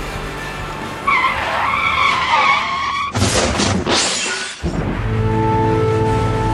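Vehicle tyres screeching under hard braking for about two seconds, then a loud crash of impact; music comes back in near the end.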